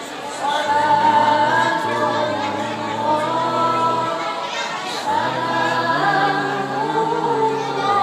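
A woman's melodic Qur'an recitation (tilawah) through a microphone and PA, in long held notes that bend and glide in ornamented phrases.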